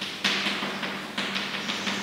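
Chalk scraping on a chalkboard in a quick run of short strokes, about four a second, as lines are hatched into a drawing.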